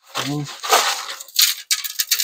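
Loose rust flakes and scale on a rotted-out steel floor pan crunching and scraping under a gloved hand, with crackly rustling and small clinking bits.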